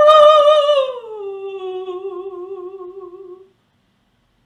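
Mezzo-soprano singing a wordless vocalise without accompaniment: one note sung loud, then sliding down in pitch about a second in and held more softly with vibrato until it stops about three and a half seconds in.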